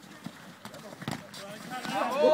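Football being played on an artificial pitch: a few sharp thuds of the ball being kicked and players' running feet, with faint distant shouts from players.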